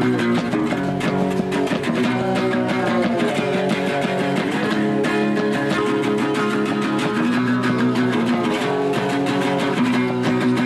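An electric guitar and an acoustic guitar strummed together in a steady chord rhythm, working through a song.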